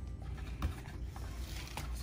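Soft handling noises of makeup packaging: a few light taps and rustles as a cardboard palette box and a bubble-wrap package are moved about in the hands.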